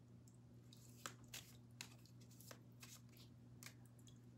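A deck of tarot cards handled and drawn from, giving about six faint, short flicks and snaps as cards are slid off the deck, spread between about one second in and the end.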